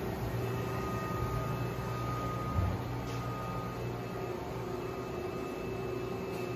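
Steady hum of machine-shop equipment and ventilation, a low drone with faint steady tones over it, and a single low thump about two and a half seconds in.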